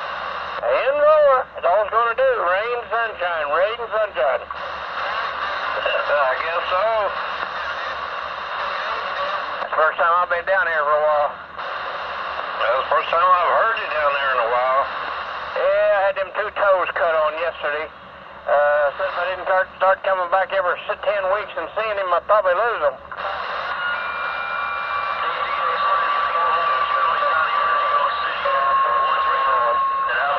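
Voices over a CB radio receiver, narrow-band and hard to make out, over a constant static hiss. About three-quarters of the way through the talk stops, leaving the hiss with a few steady, high whistling tones.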